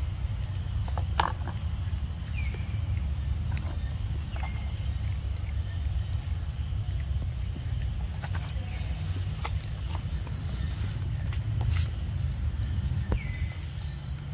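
Steady low rumble of wind on the microphone, with scattered sharp clicks and a few short, falling high chirps.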